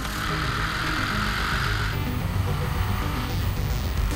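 Soundtrack music mixed with a car being driven. A rushing hiss for about the first two seconds, then a low engine hum under the music.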